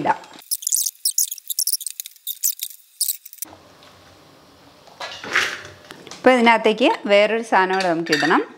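Hands working chopped dried and candied fruit and nuts around a stainless-steel bowl: a thin, crisp run of rustles and small clicks for about three seconds. After a quiet stretch, a voice comes in near the end.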